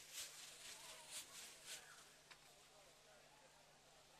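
Faint sizzling of chicken pieces sautéing in a wok over a gas flame, with a few short surges of hiss in the first two seconds, then quieter, over a steady low hum.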